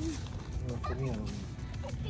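A young child's high voice in short, pitch-bending squeals or laughs, clustered between half a second and a second in.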